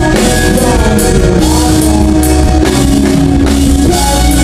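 Live rock band playing: a man singing over electric guitars and a drum kit, with cymbals struck in a steady beat.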